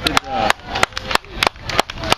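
Scattered hand claps, sharp and distinct, about three or four a second, with people talking in between.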